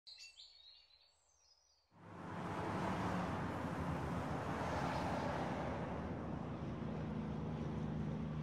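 Birds chirp briefly at the start. From about two seconds in, a steady outdoor background of distant traffic with a low hum sets in.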